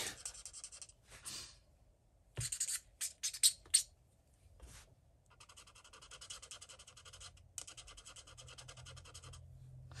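Pen nib scrubbing on paper: an alcohol blender pen rubbed over Inktense colour to lift and lighten a mistake. A few short scratches come first, then two longer runs of quick back-and-forth strokes.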